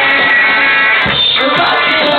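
Punk rock band playing live: loud guitars and drums.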